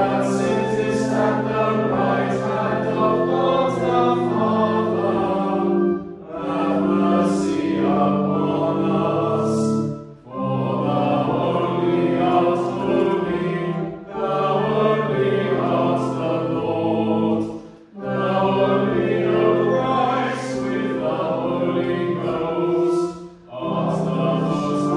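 Church congregation singing a hymn in phrases of about four seconds, with short breaks between them, over steady low held accompanying notes.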